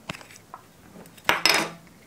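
Hands handling a plastic roll of adhesive tape and a plastic first-aid box: a sharp click at the start, small ticks, then a louder clatter of plastic a little past a second in, lasting under half a second.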